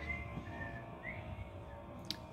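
Quiet room tone with a steady low hum and a few faint, short high tones, one rising briefly about a second in.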